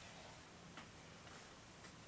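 Near silence: room tone with a few faint ticks about a second apart.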